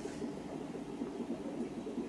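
Steady background of aquarium aeration: air bubbling through the tank water with a low, even hiss, and no distinct knocks or splashes.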